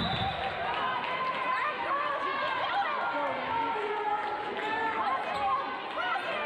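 Many overlapping voices of players and spectators chattering and calling out in a large gymnasium during a volleyball match, with no single voice standing out.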